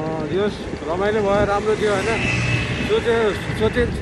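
A person's voice talking in short phrases over a continuous low rumble of road and wind noise, as from riding in traffic.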